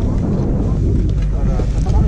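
Low rumble of wind buffeting an action camera's microphone while skiing slowly, with snatches of people's voices from about a second in.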